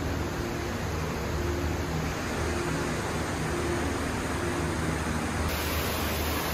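Steady rushing noise of an indoor waterfall, even and unbroken, with a faint low hum beneath it.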